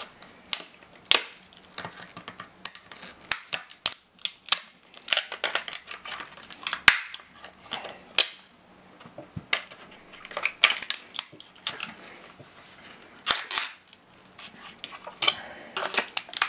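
Hard plastic case of a laptop battery pack cracking and snapping as it is pried apart with pliers: a run of irregular sharp clicks and cracks, with a few louder snaps.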